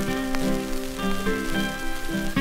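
Instrumental opening of a 1930 electrically recorded 78 rpm shellac record: a small string band playing plucked guitars with held notes, over the record's steady surface hiss and crackle.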